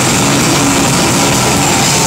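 A heavy rock band playing live and loud: distorted electric guitar and bass over a drum kit, heard as a dense, steady wall of sound.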